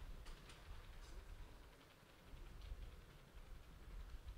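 Near silence: room tone with a faint low rumble and a few faint ticks.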